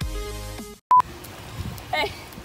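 Electronic dance music that stops short about a third of the way in, followed by a single brief, loud high beep tone; after it comes a steady background hiss, with a voice briefly heard near the end.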